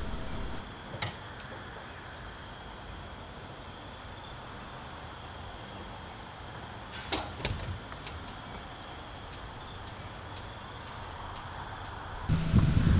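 Steady outdoor background noise with a few brief creaks and knocks from the sailboat's mast and lowering rig as the mast is let down: one about a second in, and a short cluster about seven seconds in.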